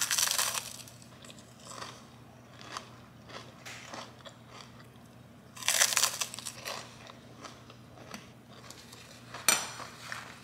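A crunchy puffed rice cake with a soft cheese spread being bitten and chewed: a loud crunch as the first bite is taken, a second loud bite about six seconds in, and quieter chewing crunches between.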